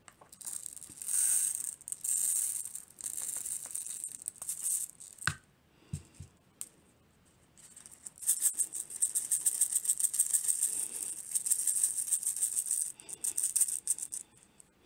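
Uncooked rice grains pouring from a plastic measuring cup into a small plastic funnel, a hissing patter of grains, then a knock about five seconds in. From about eight seconds in the rice rattles in the funnel in quick repeated bursts for several seconds, like a shaken maraca, as it is worked down through the spout.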